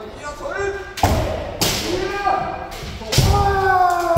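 Kendo practice: overlapping kiai shouts, long held cries that slide down in pitch, cut by several sharp cracks of bamboo shinai striking armour together with stamping feet on the wooden dojo floor.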